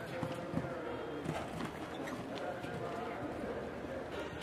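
A horse cantering on turf, its hoofbeats faint and soft under a murmur of voices.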